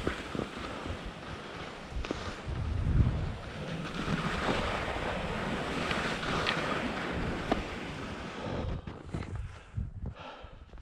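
Skis sliding and scraping down a steep slope of choppy, wind-textured snow, with scattered sharp edge clicks and wind buffeting the microphone. The sound thins out near the end as the skier slows to a stop.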